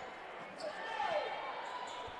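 Faint gymnasium ambience during a basketball game: a low murmur in the hall, with a faint call that glides down in pitch about a second in.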